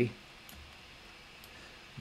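Two faint, short clicks of a computer mouse button over a quiet room background.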